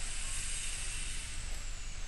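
Steady hiss of the recording's background noise with a faint low hum, no distinct events.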